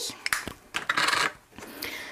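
Small plastic makeup compacts clicking and clattering: a blush compact is snapped shut and set down among others on a hard tabletop, a sharp click followed by a short clatter about a second in.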